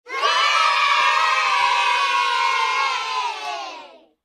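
A group of children cheering together, many voices in one long held shout that sinks slightly in pitch and fades out near the end.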